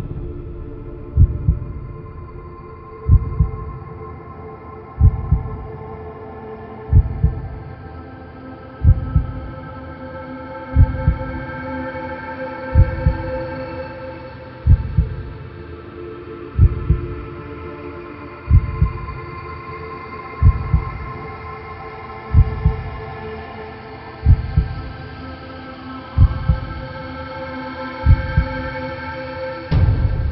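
Soundtrack music: a slow, low heartbeat-like double thump about every two seconds under layered held tones that shift slowly in pitch.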